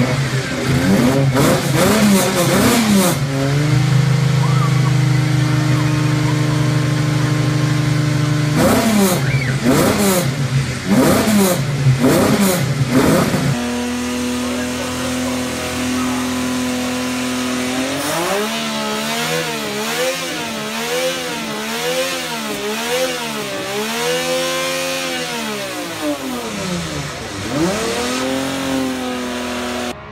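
Yamaha OX99-11's V12 engine, a detuned version of Yamaha's OX99 Formula 1 engine, revved in sharp blips, with spells of steady running in between. In the second half comes a run of quick blips, about one a second.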